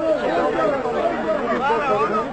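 A crowd of people chattering, many voices talking over one another.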